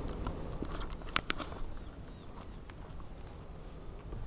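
Handling noise: a short cluster of sharp clicks and knocks about a second in, over a steady low rumble.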